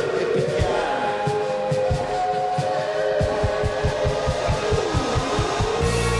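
Live band playing an instrumental passage: held tones over a drum beat that speeds up into a roll, ending in a heavy low hit as the full band comes back in.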